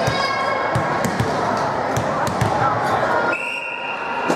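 Ball thuds on a hardwood gym floor over spectators' chatter in a large echoing hall. Near the end a referee's whistle gives one short steady blast, the signal that authorizes the serve.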